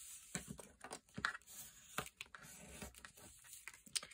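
Faint paper-handling sounds, light rustling and small scattered clicks, as glued paper pocket flaps are folded over and pressed down.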